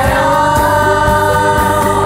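Group of young girls singing a pop song in chorus, holding one long note together over a band backing track.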